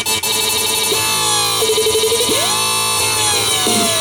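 Dubstep track: a steady synth bass under synth tones that slide slowly down in pitch, with a quick swoop up and a sharp drop about halfway through; the sound is briefly chopped into a stutter right at the start.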